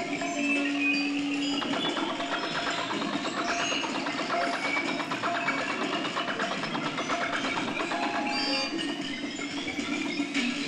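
Circuit-bent electronic instruments played through amplifiers: a steady low drone tone that stops about one and a half seconds in, then a dense texture of rapid rattling clicks with slowly rising whistling tones and scattered short electronic notes.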